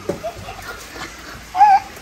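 A short, high-pitched vocal squeal about one and a half seconds in, with faint scattered sounds before it.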